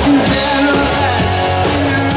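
Live rock band playing through a PA: electric guitars, bass, drums and keyboard, with vocals, and a strong hit just after the start.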